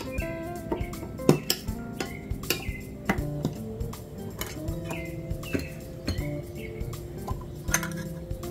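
Background music, with irregular metallic clicks and clinks from handling a metal fireplace fuel gel canister. The loudest click comes near the end, as its lid is pried off.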